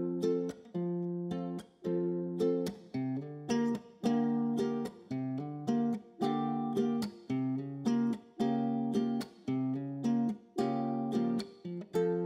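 Background music: a guitar playing chords in a steady rhythm, about one or two strums a second, ending on a chord left to ring.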